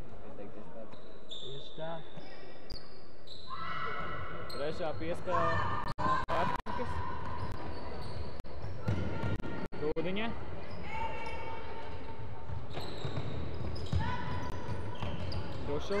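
Athletic shoes squeaking on a hardwood sports-hall floor as players run and cut, in repeated short high squeals, with players' voices calling out at times.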